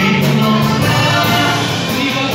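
Live dance band of accordion, bass guitar and drums playing a Polish folk-pop dance tune with singing and a steady beat.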